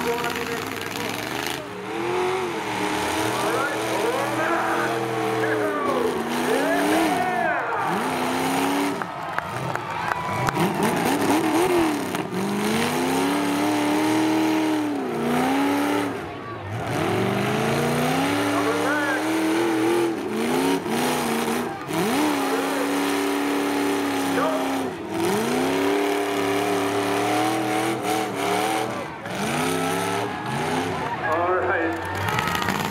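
Demolition derby car engines revving hard and dropping back again and again, the pitch climbing and falling every second or two as the cars drive and ram around the arena.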